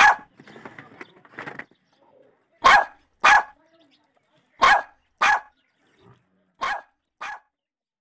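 A dog barking: seven short, sharp barks, most coming in pairs about half a second apart with a pause of about a second and a half between pairs. The last pair is quieter.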